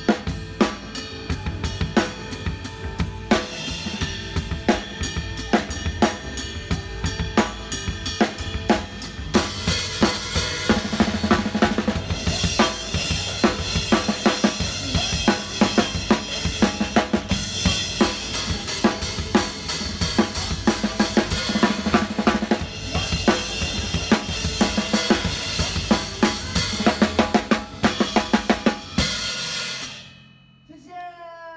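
Drum kit played live: a steady beat with sharp, evenly spaced cymbal strokes for about the first nine seconds, then a dense wash of cymbals over snare and bass drum hits. The playing stops near the end.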